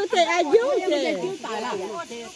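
Several women's voices calling out and exclaiming, overlapping, with repeated cries of "oi, oi".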